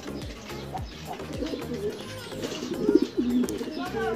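Domestic fancy pigeons cooing, low calls on and off, with music playing behind.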